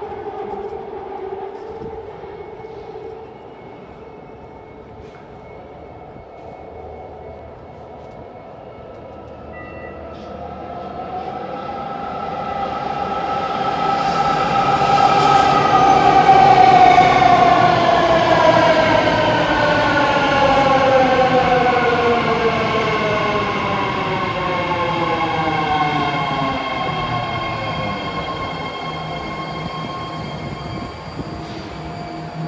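A BART Fleet of the Future electric train pulls into the platform. Its motor whine builds over the first half as it arrives, then several tones glide down together in pitch as it brakes to a stop near the end.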